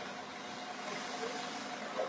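Steady background noise of an open work yard with a faint steady hum and no distinct event.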